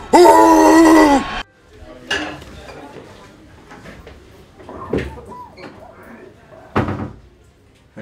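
A man's loud yell of triumph, held for just over a second, then a few scattered knocks and thuds of a door being handled, the sharpest about five and seven seconds in.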